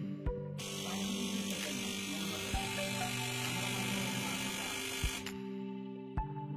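Background music, with a loud electric buzz that cuts in about half a second in and stops abruptly about five seconds in: a battery-powered electric fishing shocker discharging through its pole into the water.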